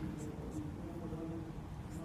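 Quiet hall room tone: a steady low hum with a couple of faint ticks near the start.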